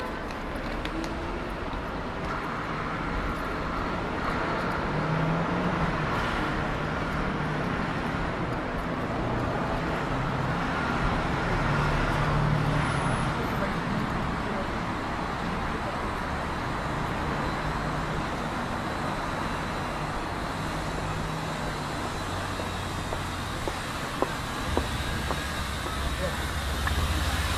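Steady city street traffic noise: vehicle engines and tyres running past, with the low hum of engines rising and falling, and passers-by talking.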